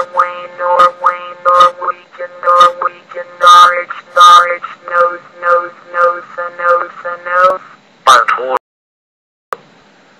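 Computer text-to-speech voice (Microsoft Mary) reading dictionary words aloud one after another in short, evenly paced bursts, with a brief pause shortly after 8 seconds.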